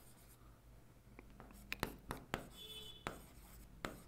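Stylus tapping and scraping on an interactive writing panel while handwriting, a run of faint, irregular clicks.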